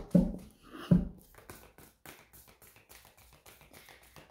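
A deck of oracle cards being handled: three sharp taps of the deck in the first second, then faint quick clicks of the cards being worked through the hands.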